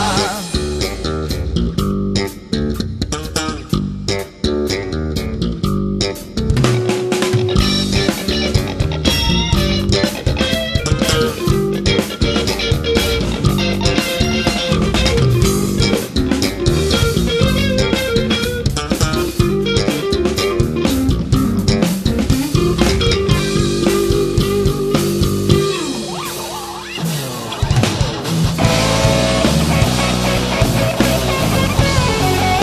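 Instrumental rock passage: electric guitar over bass guitar and a drum kit, with no singing. Near the end the band drops back briefly, with a falling slide low down, before coming in at full strength again.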